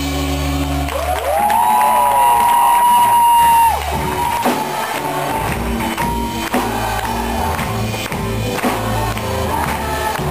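Rock band playing live, with several voices whooping loudly over the music from about a second in until a sudden stop near four seconds.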